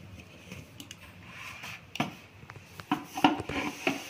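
Handling noises: dry rustling of small dried fish and a series of sharp clicks and knocks from a steel mixer-grinder jar and its plastic lid, the loudest knock about three seconds in.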